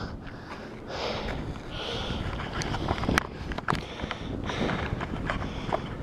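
A man breathing hard between exercises, winded after a weighted carry, with a few scuffing footsteps and clicks on a dirt surface.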